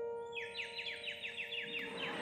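A small handheld bird whistle blown in a quick warble of short falling chirps, about seven a second, over the fading last chord of a piano. Applause starts near the end.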